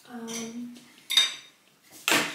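Ceramic dishes clinking as a white plate is taken down from the kitchen shelf, with one sharp, ringing clink about a second in.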